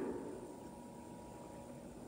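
Near-quiet room tone in a large stone church: the last spoken word's echo dies away in the first half second, leaving a faint steady hiss with a thin high hum.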